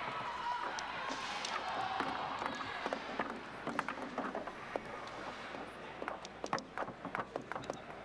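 Table football in play over a hum of background voices: sharp clicks and knocks of the ball against the figures and of the rods being worked. They come scattered at first and grow quicker and denser from about halfway in.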